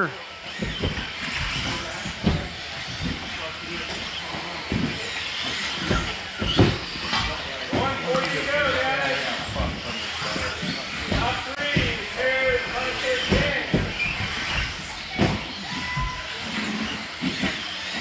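1/10-scale electric 2WD RC buggies with 17.5-turn brushless motors racing on an indoor carpet track: a steady whine and tyre hiss, with several sharp knocks from the cars landing and hitting things. Voices of other drivers in the hall come and go over it.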